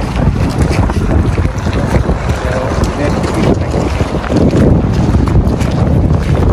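Wind buffeting the microphone: a loud, gusty low rumble that rises and falls throughout.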